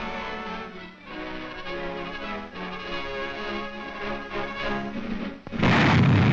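Orchestral soundtrack music playing, then about five and a half seconds in a sudden loud blast as a 15-inch coast-artillery gun fires.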